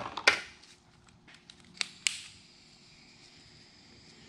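Handling noise from soldering work on wiring: a sharp click near the start, then two lighter clicks about two seconds in, the second followed by a short hiss, over a faint steady hum.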